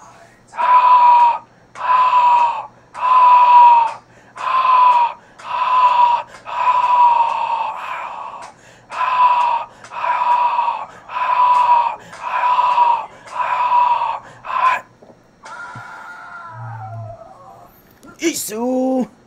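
A man's voice letting out high-pitched yells, each held for about a second on the same note and dipping at the end, about a dozen in a row at roughly one-second intervals. Near the end it trails off into a softer, falling vocal sound.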